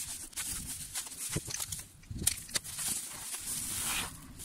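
Rustling and crinkling of a thin protective wrap as it is pulled off a boxed speaker, with scattered small crackles and clicks.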